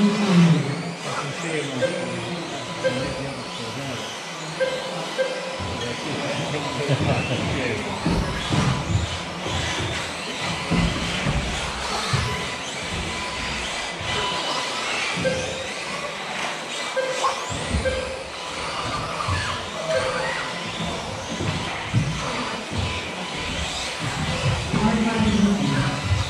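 Several electric 1/10 scale 2WD off-road RC buggies racing on an indoor astroturf track: a steady mix of motor whine and tyre noise, with short beeps recurring throughout.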